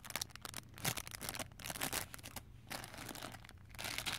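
Clear plastic bags crinkling as they are handled, with irregular crackles and a short lull a little past halfway.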